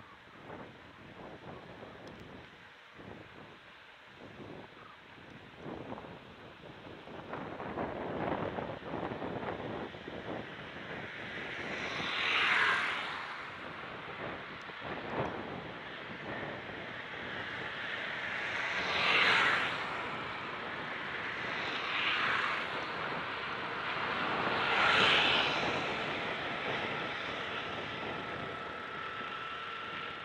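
Wind rushing over the microphones and tyre noise from a bicycle rolling along a paved road, with four brief swells of louder rushing noise, each about a second long, and a faint steady whine near the end.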